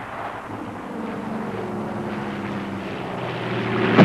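Piston engine of a propeller-driven fighter-bomber running with a steady drone, growing a little louder near the end. A loud blast hits right at the close.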